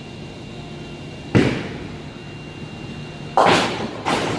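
A bowling ball landing on the lane with a sharp thud about a second in, then, about two seconds later, a louder crash of bowling pins being struck, over the steady hum of a bowling alley.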